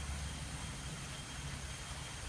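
Steady low rumble and hiss of outdoor background noise, unchanging throughout.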